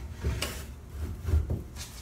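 A pine board being handled and slid into a hand miter box on a wooden workbench: a few soft wooden knocks and some rubbing, with no steady rhythm.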